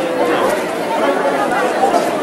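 Speech: a man talking into reporters' microphones, with crowd chatter behind him.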